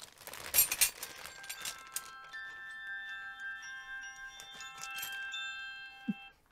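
Metal flatware clinking in a plastic bag, then an electronic chime alert: several held ringing notes come in one after another and then cut off together.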